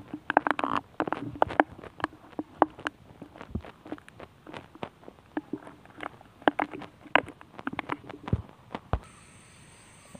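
Plastic bottle being handled and rubbed against stone, giving irregular clicks, taps and crackles, dying down about a second before the end.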